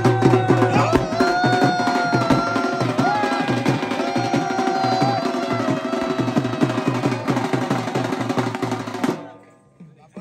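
Dhol drum beaten in a fast, steady rhythm with a long-held melody line over it, the usual music for a dancing horse. The playing stops abruptly about nine seconds in.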